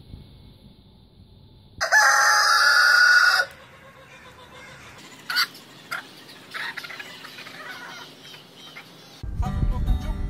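A rooster crows once, a single loud call of under two seconds about two seconds in. Near the end, acoustic guitar music begins.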